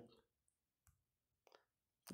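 Near silence, with a few faint, short clicks about one second and one and a half seconds in.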